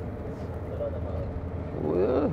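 Steady low engine and road rumble of a minibus heard from inside its cabin while it drives.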